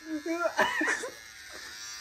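Handheld electric beard trimmer buzzing as it is pressed against a man's chin and beard, with short strained vocal cries over it in the first second.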